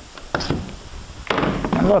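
Bessey DuoKlamp one-handed bar clamps being released and pulled off a door edge: two short clunks of the clamps' jaws and bars against the wood, about a second apart.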